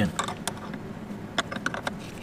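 Phillips screwdriver working a motorcycle battery's terminal screw: a scatter of small sharp clicks and ticks, more of them in the second half.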